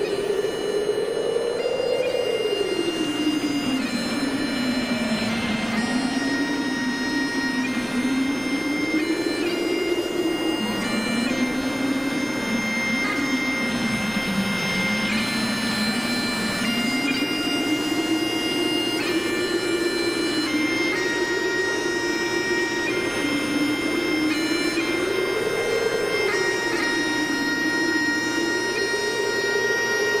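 Bagpipe music: a slow tune with long held notes over a continuous drone.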